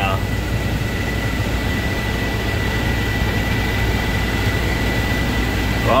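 Tractor engine running steadily, heard from inside the cab, with a thin, constant high-pitched whine over the low drone.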